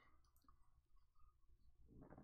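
Near silence: faint room tone with a low hum and a few soft clicks.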